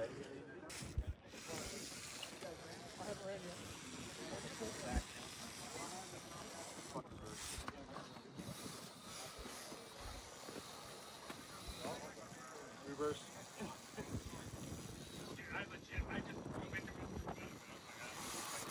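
Quiet outdoor hiss with faint voices talking in the distance and a few soft thumps.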